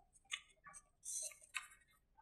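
Faint handling of paper cards against a whiteboard: a few short taps and clicks, with a brief paper rustle about a second in.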